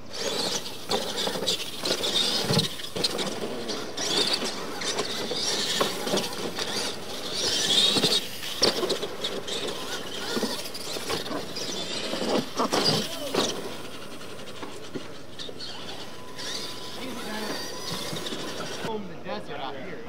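Radio-controlled monster trucks racing on a dirt track: a motor and drivetrain whine, tyres scrabbling and throwing dirt, and sharp knocks as they run over the ramps. It cuts off abruptly about a second before the end.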